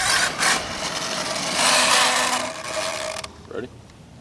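HPI Savage Flux HP brushless RC monster truck driving on gravel: motor and drivetrain whine with tyre crunch, in surges with the throttle, then dropping away sharply near the end. Its rear differential pinion is going out.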